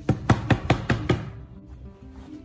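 A quick run of about six sharp knocks, evenly spaced at about five a second, then stopping, over background music.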